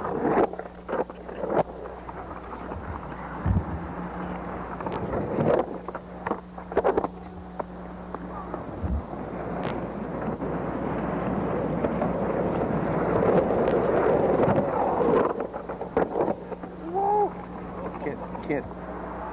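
Camcorder field sound of skateboarding on pavement: a rolling rumble that swells and fades around the middle, with several sharp clacks and knocks over a steady low hum from the tape.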